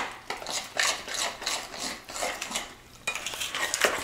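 Cornbread batter being stirred by hand in a glass mixing bowl, the utensil scraping and clicking irregularly against the glass. There is a brief lull shortly before the end.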